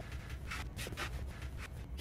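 Faint rustling and light clicks over a low steady hum.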